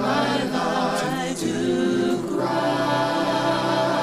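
A group of voices singing a hymn a cappella in harmony, with held notes that shift from chord to chord.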